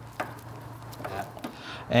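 A few light clicks and handling noises as hands fit hoses and a hose clamp inside a Vespa scooter's frame, over a steady low hum.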